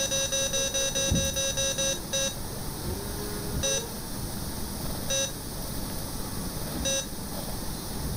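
Patient monitor beeping with each heartbeat: a fast run of about five beeps a second, from a supraventricular tachycardia near 280 beats a minute. About two seconds in the run stops, and single beeps follow roughly every second and a half as adenosine briefly slows the heart.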